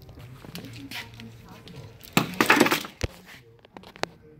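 Handling noise from a wiring harness and its plastic connectors: scattered light clicks, a loud burst of rustling and clattering about two seconds in, then a single sharp knock.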